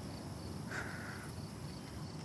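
Faint crickets chirping steadily in a night-time background, with one short steady tone of about half a second just before the middle.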